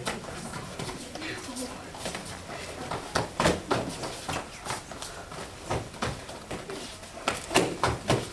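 Kicks and punches landing on padded sparring chest protectors: irregular sharp thwacks, a quick cluster around the middle and several more near the end.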